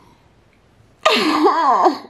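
A woman laughing into her hands, a single high burst with wavering pitch, under a second long, about a second in.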